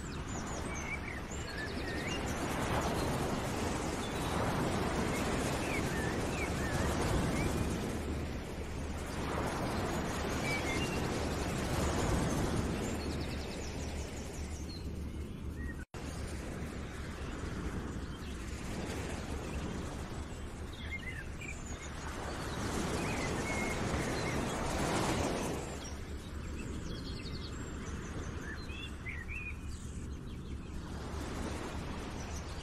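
Outdoor nature ambience: small birds chirping over a steady rushing noise that swells and fades every few seconds. The sound cuts out for an instant about halfway through.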